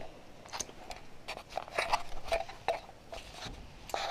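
Light rustling and a scattering of small clicks and taps: handling noise close to the camera as it is moved and turned around.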